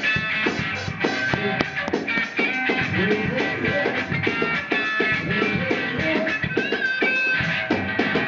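Live gospel band music: electric lead guitar playing melodic lines over a steady beat.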